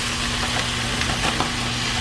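Frozen shrimp scampi linguine sizzling in a hot, oiled cast-iron skillet while a spatula stirs and scrapes it, over a steady low hum.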